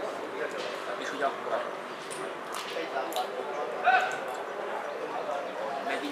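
Distant shouts and calls of football players and spectators across an open pitch, with a louder shout about four seconds in.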